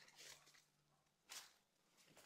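Near silence, with one brief faint noise a little past the middle.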